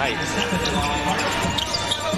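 Basketball dribbled on a hardwood court, its bounces knocking, with arena music playing in the background.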